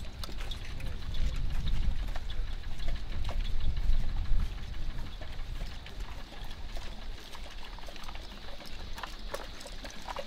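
Footsteps and clinking gear of a file of soldiers walking, heard as scattered short clicks over a low rumble that is strongest in the first half.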